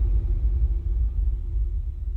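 Deep bass rumble with a faint held tone above it, slowly fading out: the decaying tail of an outro sound effect.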